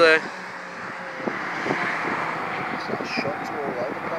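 Cars running on the race circuit at a distance, heard as a steady wash of engine and tyre noise that swells a little about halfway through.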